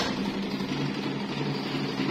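A click as the switch on an electric stand fan is pressed, then the fan's motor and clear plastic blades running with a steady hum.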